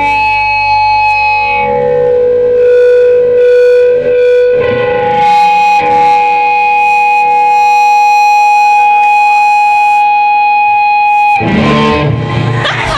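Electric guitar played through distortion and effects, ringing out long sustained notes. The last note is held for about six seconds and cuts off about half a second before the end.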